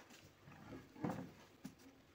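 Rolling pin rolling momo dough wrappers on a floured board, a low rumbling with a louder thump about a second in.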